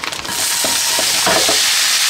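Marinated soy curls dropping into a hot, oiled frying pan: the oil breaks into a sizzle the moment they land, which quickly thickens into a steady frying hiss.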